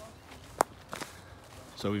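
Footsteps through grass with a few sharp clicks, the loudest about half a second in. A man starts talking near the end.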